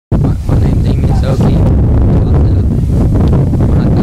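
Wind buffeting an outdoor microphone: a loud, steady low rumble, with faint voices in the background.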